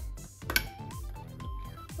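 Background music with a steady beat and a simple melody. About half a second in, a single sharp click as a plastic toy makeup palette case snaps open.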